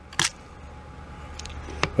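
A sandwich pushed into a plastic tray of thick dipping sauce: one short, sharp click-like squish just after the start, then a couple of faint ticks near the end over a low steady hum.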